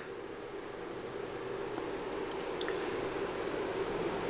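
Steady low background noise with a faint hum, slowly growing louder, and a few faint light ticks about two and a half seconds in.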